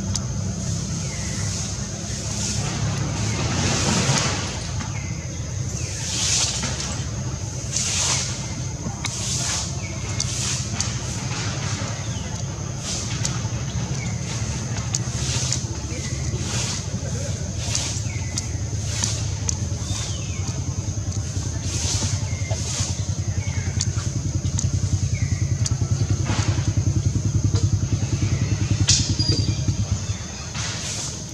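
A steady low engine-like rumble runs throughout, a little louder near the end. Above it sits a continuous high-pitched buzz, broken by short hissy bursts every second or two.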